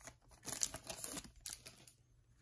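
Foil trading-card pack wrapper crinkling in the hands as it is torn open and the cards are pulled out, in short scattered crackles that thin out towards the end.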